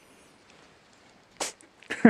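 A cat sneezing: one short, sharp sneeze about one and a half seconds in, and the start of another right at the end, part of a run of repeated sneezes.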